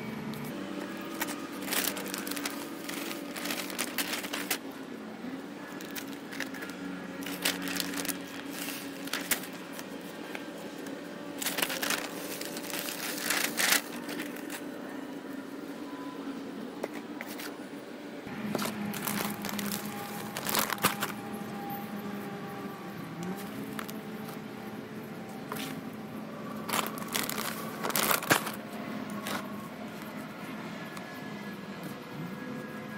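A plastic potting-soil bag rustling and crinkling as soil is poured and handled into plastic plant pots, in scattered bursts over a steady low hum.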